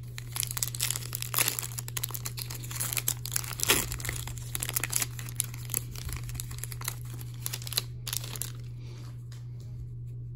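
Foil wrapper of an Upper Deck hockey card pack being torn open and crinkled by hand, a dense run of crackles and sharp snaps that dies down about eight and a half seconds in.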